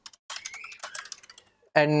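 Typing on a computer keyboard: a quick, uneven run of keystroke clicks lasting about a second, with a man's voice starting near the end.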